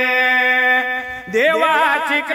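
Devotional song: a solo singer holds one long steady note for about a second, breaks off, then starts a new phrase with wavering, ornamented turns of pitch.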